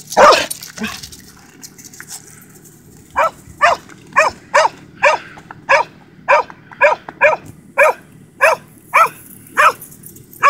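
Border collie barking in excitement: one bark right at the start, then from about three seconds in a steady run of sharp barks, about two a second.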